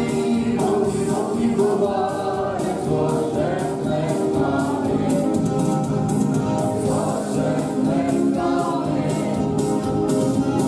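A small group of voices singing a song together, led by a woman's voice on a microphone, with a live band of electric guitar and keyboard playing along.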